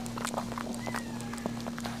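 Maltese mother dog licking her newborn puppy and its birth sac: soft, irregular wet clicks and smacks over a steady low hum.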